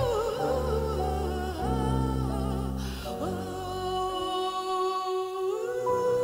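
Live song: a woman singing a wordless, wavering vocal line over a bowed double bass that plays changing low notes. About four seconds in the bass drops out, leaving held sustained tones under the voice.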